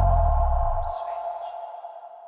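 Electronic logo sting for the Switch TV end slate: a deep boom that dies away within about a second under a held ringing tone that slowly fades out. A faint high swish comes about a second in.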